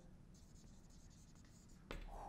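Faint scratching of a felt-tip marker writing letters on a whiteboard, with a short click near the end.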